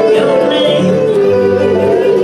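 Women singing a country song into microphones, holding sustained notes with a wavering pitch, over live acoustic guitar accompaniment.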